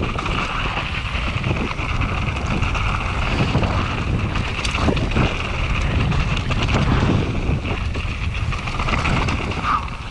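Wind buffeting the microphone: a loud, steady rush of noise with a low rumble and no distinct events.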